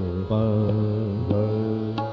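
Male Hindustani classical vocalist singing Raag Basant Mukhari, holding long, steady notes and moving to a new note about a quarter second in, with a few light tabla strokes underneath.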